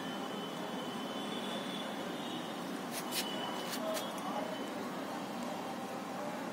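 Steady outdoor background noise with a faint, thin high tone running through it, and a few sharp clicks about three to four seconds in.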